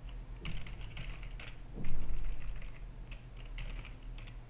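Keystrokes on a computer keyboard: irregular clicking as text is typed, with one louder knock about two seconds in, over a low steady electrical hum.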